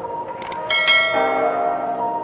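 Background music, with two quick clicks about half a second in, followed by a bright bell-like ding that rings briefly and fades. These are the sound effects of a subscribe-button animation.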